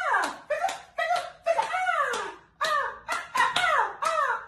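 A rhythmic sound track of sharp clicks, each followed by a short yelp-like tone falling in pitch, repeating two or three times a second.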